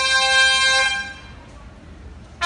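Orchestra brass section holding a loud chord that cuts off about a second in, leaving a short lull.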